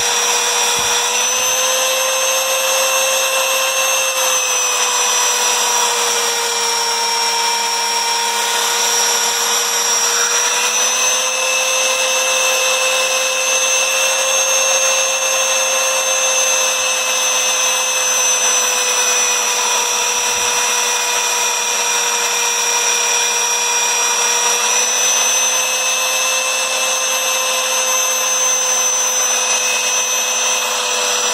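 Electric belt sander, clamped upside down, running steadily as a steel knife blade is ground against its belt: a continuous motor whine with a gritty grinding hiss. The whine dips slightly in pitch at times as the blade is pressed on and rises again when it is lifted.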